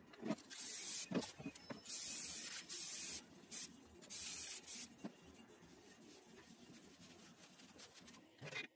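Aerosol spray-paint can spraying in several short hissing bursts, the longest about a second, during the first five seconds. A few light knocks of handling come in between.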